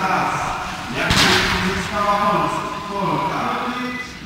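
A voice speaking, with one sudden loud bang about a second in.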